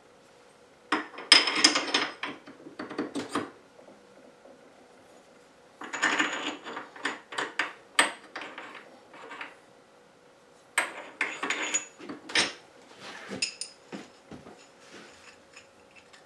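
Steel milling tooling being handled and fitted against the mini mill's spindle: an R8 collet and drawbar clinking and scraping, metal on metal. The sounds come in three clusters of quick clicks and rattles.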